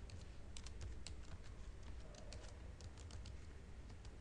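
Computer keyboard typing: a quick, irregular run of faint key clicks, with a pause around the middle, over a low steady hum.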